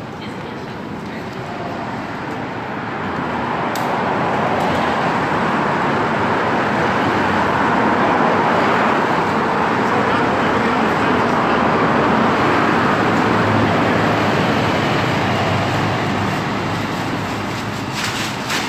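Road traffic passing close by, a steady rush of tyres and engines that swells a few seconds in and eases near the end.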